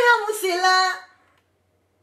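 A female voice singing one drawn-out word, its pitch falling, stopping about a second in.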